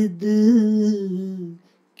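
A man singing one long held note on the word 'zid', with a slight wobble in pitch about halfway through; it fades out shortly before the end, leaving a brief silence.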